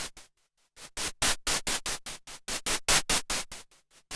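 Minimoog synthesizer's noise generator, oscillators off, played from the keyboard as short bursts of hiss, about seven a second, in runs with a brief pause about half a second in: a white-noise percussion sound.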